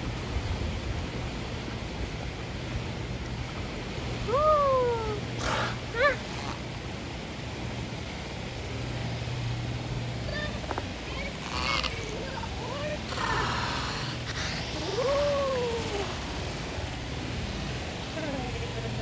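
Beluga whale calling at the surface: a few separate squealing calls, each rising and then falling in pitch, with a steady low background of water and air.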